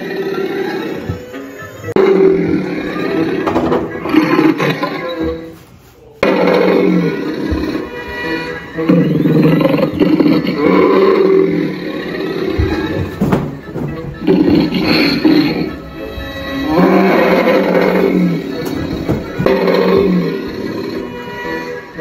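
Spirit Halloween Barnaby the Bear animatronic running its demo routine, playing roars and growls over music in repeated loud phrases, with a brief pause about six seconds in.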